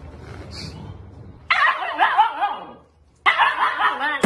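A husky vocalizing in two stretches of wavering whines, the first starting about a second and a half in and the second near the end.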